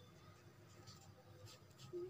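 Ballpoint pen writing on paper: a few faint, short scratching strokes.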